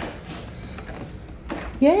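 Brass lever handle of a wooden French door pressed down and the latch clicking as the door is pushed open.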